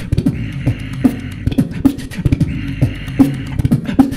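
Solo beatboxing into a handheld microphone: a driving rhythm of deep kick-drum thumps with snare and hi-hat clicks, overlaid with two long hissing sounds, one starting about half a second in and another about two and a half seconds in.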